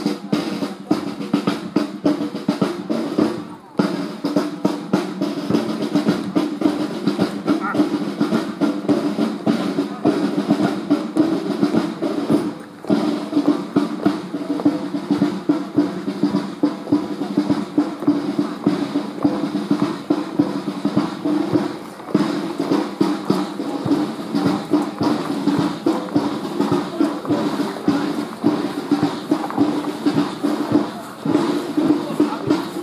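Parade drums, snare and bass, beating a steady march with rolls. There are short breaks about four seconds in and again about thirteen seconds in.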